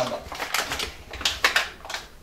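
Paper bag of brown sugar crinkling and rustling as it is picked up and turned over, in several short crackly bursts.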